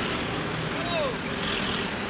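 Road traffic noise, with a small flatbed truck's engine running close by.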